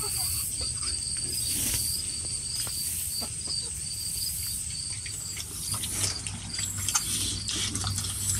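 Hens feeding on scraps on bare ground: scattered light pecking taps and faint, low clucks. A steady high chirping, about three pulses a second, runs behind them.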